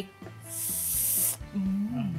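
A short hiss lasting a little under a second, over soft background music, followed by a brief hummed 'mm'.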